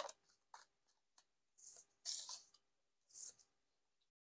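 Faint sounds of a tarot deck being shuffled by hand and cards slid out onto a cloth-covered table: a few light card taps, then three short papery swishes in the second half.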